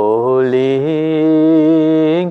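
A man chanting a mantra in long held vowel tones. The pitch glides down into a low note and steps up to a higher held note about a second in.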